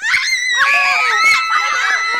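Several women and a girl screaming together in alarm. The screams break out all at once and are loud, high-pitched and overlapping.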